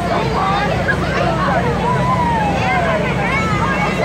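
Many children's voices chattering and calling over one another, over a steady low hum of ride machinery.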